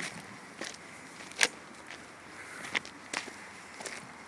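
Footsteps on a gravel path: a handful of separate, unevenly spaced steps, the sharpest about a second and a half in.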